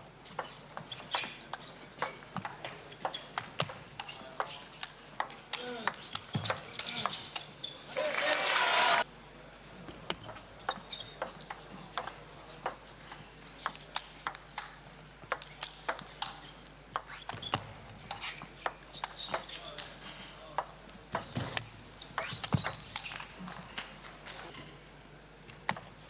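Table tennis rallies: the celluloid ball clicking back and forth between the rubber bats and the table in quick, irregular strings of sharp knocks. About eight seconds in, a loud burst of crowd noise cuts off suddenly.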